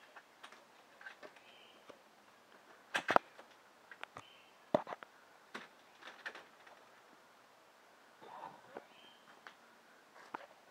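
Faint scattered clicks and knocks, the loudest a quick cluster about three seconds in and a single sharp click near five seconds, with a few short high chirps.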